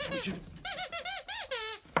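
Sweep glove puppet's squeaker voice: a quick run of about six short, high squeaks that rise and fall like chattering speech.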